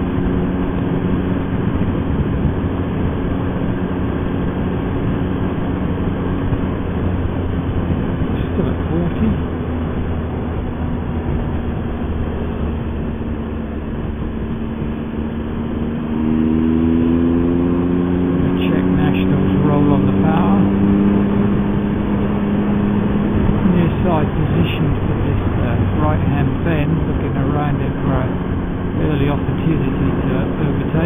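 Motorcycle engine running at road speed with steady wind and road noise. About halfway through, the engine note rises and grows louder as the bike accelerates. It holds the higher pitch for several seconds, then eases back.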